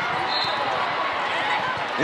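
Volleyball rally in a reverberant indoor sports hall: the ball being played, over a steady background of spectator chatter, with a brief high squeak about a third of the way in.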